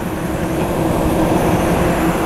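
A 2007 Jaguar XK's 4.2-litre V8 running at idle, heard from the open engine bay: a steady rumble with a constant hum that grows slightly louder.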